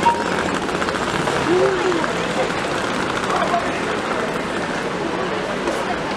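Busy city street ambience: indistinct voices of passers-by over a steady wash of traffic going by.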